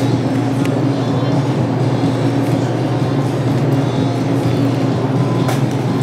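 Steady, loud mechanical hum with a few faint clicks.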